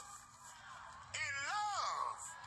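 A man's voice in a drawn-out, wailing preaching tone: after a brief lull, one held syllable about a second in that rises and then falls in pitch. It is the chanted delivery of an impassioned sermon.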